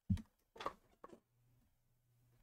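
A dull low thump, then two short scuffing knocks about half a second apart: handling noise as a person gets up from a desk chair.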